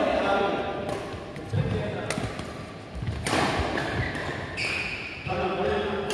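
Badminton rally: sharp racket strikes on the shuttlecock about a second apart, with footwork on the court between them.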